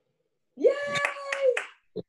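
A woman cheers a drawn-out "Yay!" and claps her hands three times during it.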